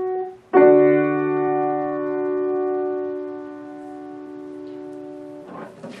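Grand piano: a held chord cuts off at the start, then a final chord is struck about half a second in and left to ring, slowly dying away for about five seconds until it is released near the end.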